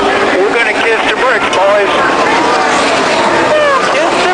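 Stock car V8 engines running on the track, mixed with several excited voices shouting over one another as the pit crew celebrates the win.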